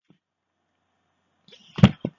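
Slide-transition sound effect: a short whoosh that ends in a sharp, loud thud near the end.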